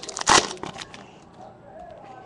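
Foil trading-card pack wrapper crinkling and crackling as it is handled after being torn open, loudest about a third of a second in and dying away after about a second.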